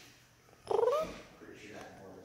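A kitten meowing once, a short call about two-thirds of a second in that rises and then falls in pitch.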